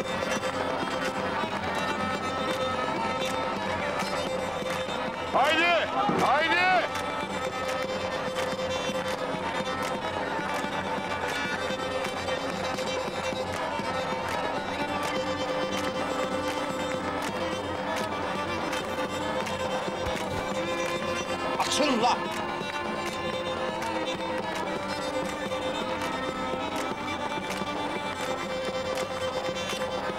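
Turkish folk dance music for a karşılama, played on clarinets and a davul bass drum, running steadily with a held reedy tone. Voices call out briefly twice, about six seconds in and again about twenty-two seconds in.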